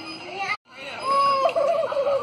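A chicken calling: a brief dropout about half a second in, then a wavering, quavering cluck that lasts about a second.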